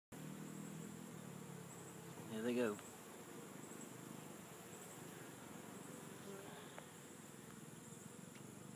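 Honeybee swarm buzzing, a steady low hum that is strongest in the first couple of seconds.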